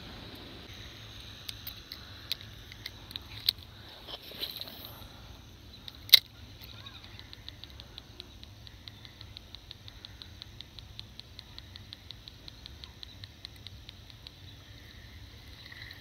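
Spinning reel at work: scattered handling clicks, one sharp snap about six seconds in like the bail closing after a cast, then rapid, even ticking as the reel is cranked and line is wound in.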